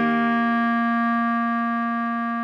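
Clarinet holding one long, steady note: written C4 on a B-flat clarinet, which sounds concert B-flat. A fainter, lower accompaniment tone sounds beneath it.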